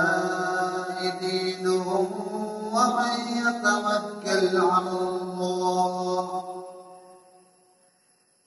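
A man reciting the Quran in Arabic in a melodic chant (tilawah), drawing out long held notes with short breaths between phrases. The phrase fades out about six and a half seconds in, leaving near silence.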